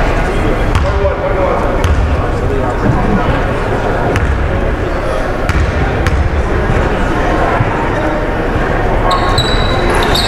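A basketball bounced a few times on a hardwood gym floor as a free-throw shooter dribbles at the line, over a steady background of voices in a large gym.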